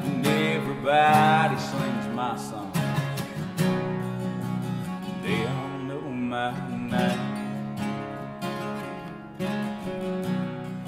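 Two acoustic guitars strumming and picking a country song, with a man's voice singing over them at times.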